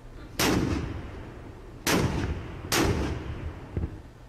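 Three shots from a deck gun aboard the battleship, each a sudden blast that trails off over about a second. The first comes about half a second in, and the other two follow close together near the middle.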